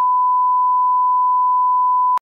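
Steady, unwavering pure test-tone beep at one pitch: the reference tone that goes with television colour bars.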